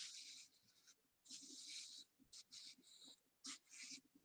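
Faint, repeated strokes of a bristle wave brush through short waved hair: each stroke is a short scratchy swish, about six of them.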